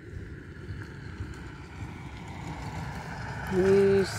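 Steady low wind rumble on the microphone, with a motor scooter's engine growing louder as it approaches. Near the end a person's voice calls out a short held sound.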